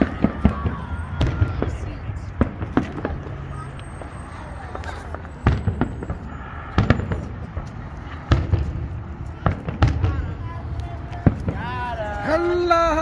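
Aerial fireworks bursting: an irregular run of a dozen or more sharp bangs and booms, each trailing off in a low rumble.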